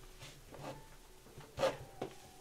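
Faint rustling and handling as a person reaches down to pick up a fallen tarot card, with one brief sharper sound about one and a half seconds in.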